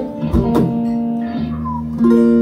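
Guitar being tuned: plucked strings left ringing, a fresh low note about halfway through, and one note sliding up in pitch near the end.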